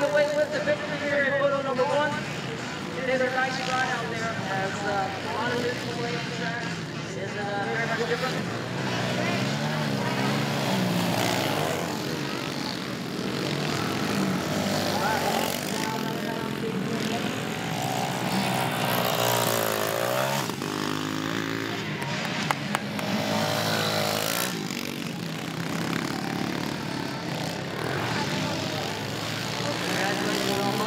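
Several small 110cc dirt bike engines running and revving on the track, their pitch rising and falling as the riders open and close the throttle; one strong rev climbs and drops about two-thirds of the way through.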